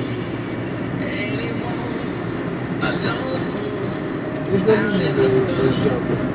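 Steady road noise inside a moving car's cabin: tyres running on a wet road, with the engine under way at speed.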